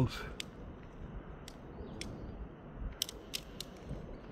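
Light scattered clicks and taps of handling over a low steady background hiss, with a small cluster of clicks about three seconds in.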